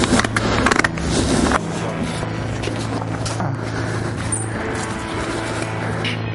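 Background music with sustained low tones. Over it, during the first second and a half, come sharp scraping and clicking strokes: a farrier's tool cutting away excess horn from a horse's hoof.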